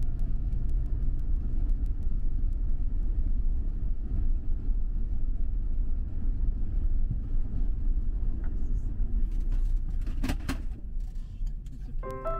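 Car driving on a paved road: a steady low rumble of tyre and engine noise. A few sharp clicks or knocks come about ten seconds in.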